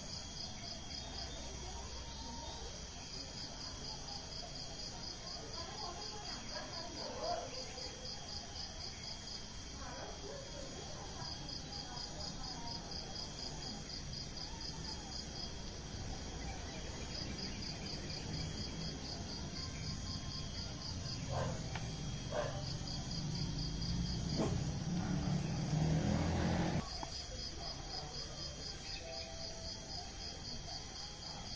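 Insects chirping outdoors: trains of rapid high pulses, each lasting a few seconds, that repeat throughout over a steady high-pitched insect drone. In the last third a louder low rumble with a few knocks rises for several seconds, then drops away.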